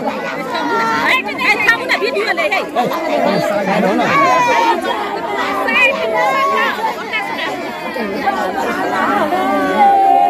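Several women crying and lamenting in grief, their drawn-out wailing voices overlapping with the chatter of a gathered crowd.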